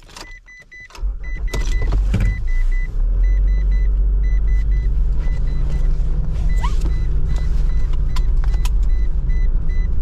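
Mitsubishi 4WD's engine starting about a second in, then running steadily. Heard from inside the cabin, with a dashboard warning chime beeping over it in short, high-pitched, repeated beeps. Scattered clicks and knocks from the cabin controls.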